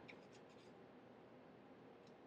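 Near silence: faint room hiss, with a few soft paper ticks and rustles near the start as a paperback book is handled in the hands.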